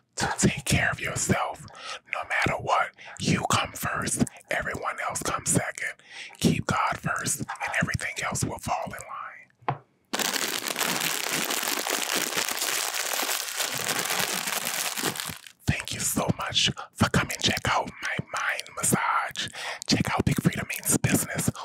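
Close whispered speech into a studio microphone, interrupted in the middle by about five seconds of steady, dense crinkling of a Cheetos bag handled close to the mic.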